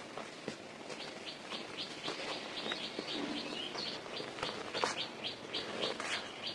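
Dry cement powder crumbling and sifting down through fingers into a plastic tub, a soft hiss with occasional sharp knocks of falling lumps. A bird chirps steadily in the background, short high chirps about four a second.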